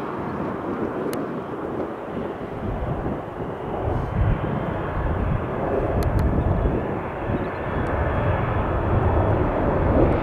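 Airbus A330-300 airliner's twin jet engines at takeoff thrust as it rolls down the runway and lifts off into the climb. A steady rumbling jet noise grows deeper and louder from about four seconds in.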